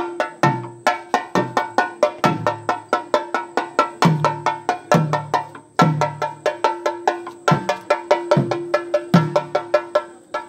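Kerala temple percussion for thidambu nritham: fast stick strokes on chenda drums at about five to six a second with ringing elathalam cymbals, and a deeper drum beat about once a second under a steady held tone.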